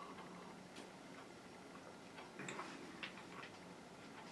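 A person sipping from a glass, then swallowing and chewing bread: faint, irregular mouth clicks, with a slightly louder cluster a little past halfway.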